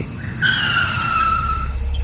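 Car tyres screeching under hard braking: one screech that falls slightly in pitch and lasts a little over a second, with a low rumble coming in near the end.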